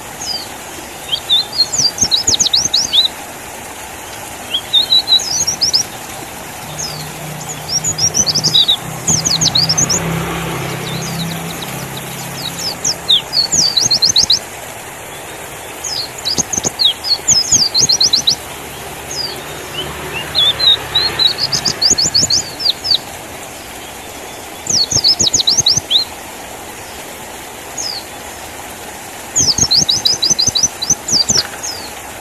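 White-eye (pleci) singing in repeated short bursts of rapid, very high chirps, a burst every second or two with brief gaps between. A low rumble swells twice, about ten and twenty seconds in.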